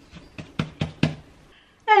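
Hands patting a ball of risen saffron-bun dough on a floured wooden board: about five quick, hollow pats within a second.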